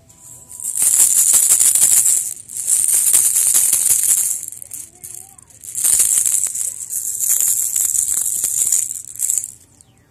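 Plastic baby rattle shaken in three bouts of about two to four seconds each, a dense bright rattling with short pauses between.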